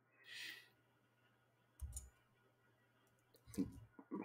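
Faint clicks at a computer: a soft thump with sharp clicks about halfway through, and a few quicker clicks later. A short breathy hiss comes near the start.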